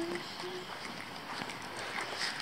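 Faint footsteps on paving with a light rustle of clothing against the chest-mounted camera, after a short hummed 'mm' at the start.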